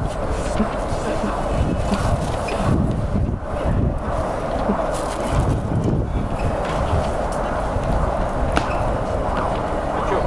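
Outdoor city street noise picked up by a handheld camera on the move: a steady low rumble with wind buffeting the microphone and scattered knocks from handling.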